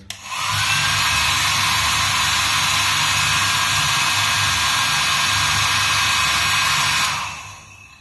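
Electric air blower running steadily to push air through an unmounted Elster BK-G6T gas meter, driving the counter in a test of whether the meter turns. It comes on about half a second in with a short rising whine and cuts off about seven seconds in.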